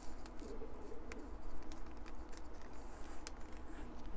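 Faint, scattered clicks and taps of balsa wood pieces being slid and set in place on a building board, over a low steady hum.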